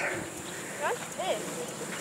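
Two short, faint calls from a distant child's voice about a second in, the first rising sharply and the second arching up and down.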